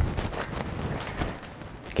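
A soft thump as a person pushes up off a bed, then quiet footsteps on a wooden floor.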